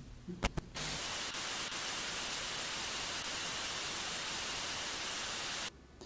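Steady static hiss, like white noise, starting about a second in and cutting off abruptly near the end, with a few faint clicks just before it.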